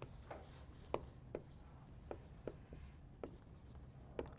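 Dry-erase marker writing on a whiteboard: a faint series of about seven short strokes.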